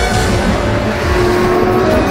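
Outro theme music with a car engine sound effect that comes in suddenly and sits under the music.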